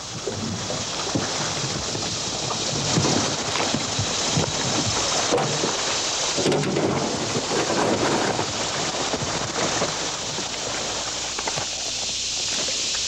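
Water splashing and stones crunching underfoot at a rocky river's edge, with irregular knocks and crackles over a steady rush of noise.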